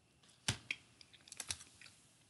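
A few sharp clicks from a computer keyboard and mouse: one about half a second in, another just after, then a quick cluster of taps around a second and a half in.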